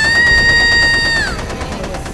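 A dramatic sound effect: a high, steady, piercing tone that slides up at the start, holds for just over a second and then drops away, over a low rumble.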